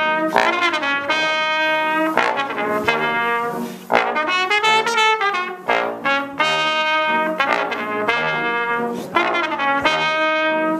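Trumpet and trombone playing a duet, a run of held and moving notes together, with a brief break a little before four seconds in.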